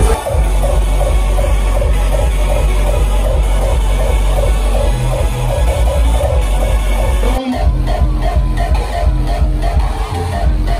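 Loud electronic dance music from a DJ set, heard from within the crowd, with a steady beat. The bass cuts out briefly about seven and a half seconds in, then the track carries on.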